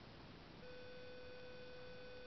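A faint steady pitched tone starts about half a second in and holds unchanged over low background hiss.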